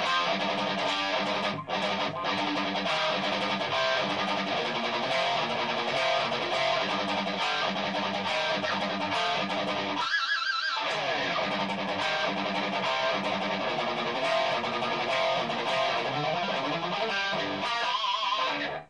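Distorted electric guitar playing fast metal riffs with a repeating low chugging rhythm. About ten seconds in, the riffing breaks for a high note shaken with wide vibrato that then slides down in pitch, before the riffing picks up again.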